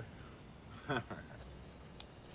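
A brief vocal sound from a person, a short sliding utterance about a second in, over quiet background.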